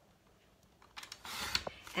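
Near silence, then about a second in, a brief rasping rustle of paper being trimmed.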